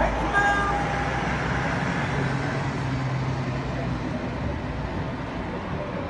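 Steady road-traffic noise of a city with a low engine hum. In the first second the echo of a loudspeaker call to prayer fades out.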